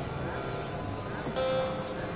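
Experimental electronic synthesizer music: steady high sustained tones over a grainy, noisy texture, with a steady mid-pitched tone coming in about one and a half seconds in.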